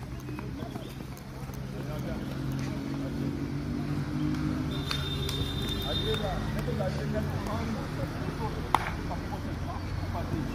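Distant voices of players on an open football pitch over a low steady hum, with a brief high steady tone about five seconds in and one sharp knock near the end.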